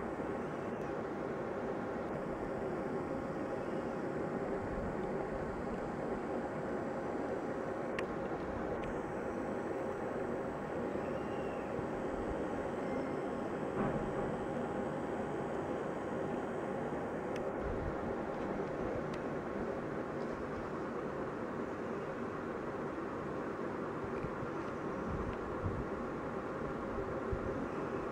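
Steady hum and hiss of room noise, with a few faint steady tones and no distinct events.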